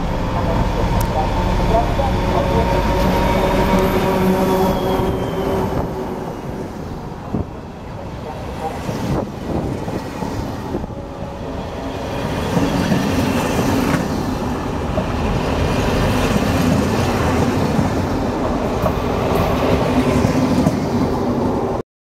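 ČD class 754 'Brejlovec' diesel-electric locomotive arriving, its diesel engine running loud over a deep rumble, with thin ringing tones and a slowly falling whine in the first few seconds. It eases off in the middle, and from about twelve seconds double-deck coaches roll past with a rattling, clicking rumble of wheels on rail.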